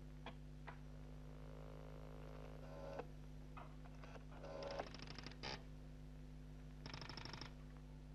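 A few faint clicks of a telephone dial, then short rattling bursts of electromechanical stepping switches in a telephone exchange as they hunt and connect the call, about four and five seconds in and again near the end. Underneath runs a steady low hum.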